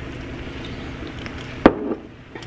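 Steady low hiss of a wok of cauliflower fried rice on the stove, with one sharp knock of a hard object against the pan or counter about one and a half seconds in.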